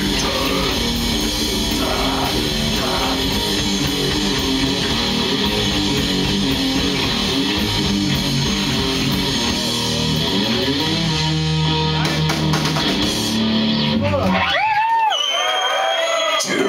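Live death metal band with distorted electric guitars and drums playing the close of a song, ending on long held chords that ring out. The music stops about a second and a half before the end, and shouting voices follow.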